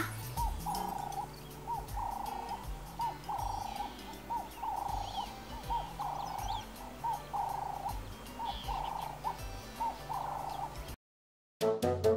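Spotted dove cooing: a long run of soft, repeated coos. The sound cuts out briefly about a second before the end.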